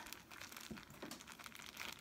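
Plastic zip-top bag crinkling faintly as it is handled, with scattered small ticks.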